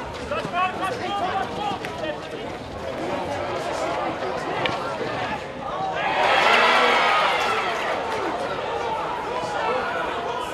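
Hockey players' shouts and calls on the pitch, with a louder burst of many voices shouting together about six seconds in. A sharp clack sounds near the middle.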